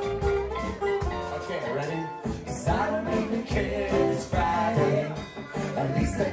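A folk-rock band playing live with acoustic guitar, upright bass, drum kit and keyboard, and a voice singing over it.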